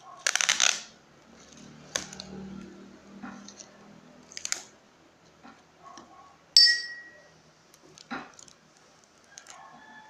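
Handling of a tape-wrapped paper squishy and a roll of sticky tape: a loud crinkling rustle near the start, scattered clicks and light rustles, and a sharp snap with a brief ringing squeal a little past halfway, as tape is pulled and torn.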